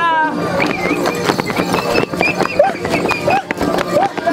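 Dancers' feet stamping and knocking on a concrete street in a quick, uneven rhythm, amid shouts and high-pitched voices of a crowd.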